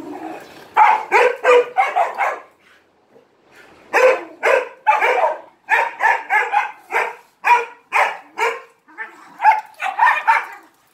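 A small aspin (Filipino native dog) barking in quick, repeated play barks at larger dogs: a fast run of about five barks, a short pause, then barking again from about four seconds in at roughly two barks a second. It is attention-seeking play barking.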